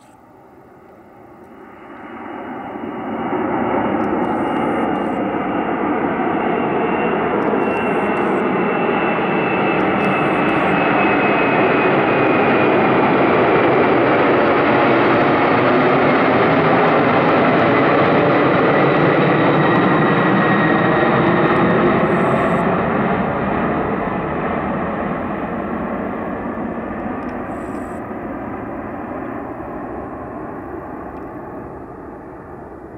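McDonnell Douglas MD-11F trijet's engines at climb power just after takeoff. The sound builds fast in the first few seconds, holds loud with a high whine that slides down in pitch as the aircraft passes, then fades as it climbs away.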